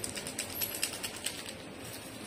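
A quick run of light clicks and clinks, like cups, saucers and spoons being handled on a café table, fading to a low background hum of the room near the end.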